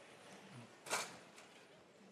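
Faint background noise of a robotics competition hall during a match, with one short, sharp hiss-like noise about a second in and a fainter tick just after.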